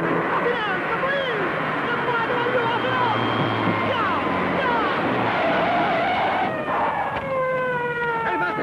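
Several men shouting in a hurry over running car engines; about seven seconds in, a police siren comes in, its wailing tone sliding slowly downward.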